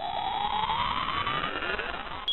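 Synthetic rising-tone sound effect: a shimmering electronic tone that climbs steadily in pitch.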